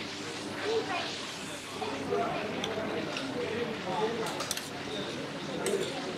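A metal spoon scraping and clinking against a steel serving plate as biryani is served out, a few light clinks coming mostly near the end. Voices murmur in the background.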